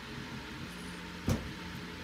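Steady low hiss of room noise with a single sharp click about a second and a half in.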